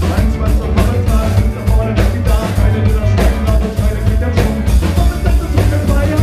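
Live ska-punk band playing loud: electric guitars, bass and drum kit, with a singer's voice over them.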